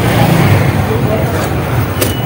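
Steady street traffic noise with a low engine rumble, and faint voices in the background.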